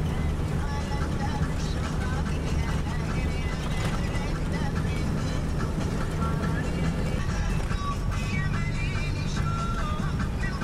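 Steady engine and road rumble of a moving vehicle heard from inside, with music and a voice playing over it.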